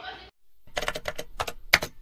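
Keyboard-typing sound effect: a quick, uneven run of sharp clicks starting about half a second in, laid under an animated subscribe button.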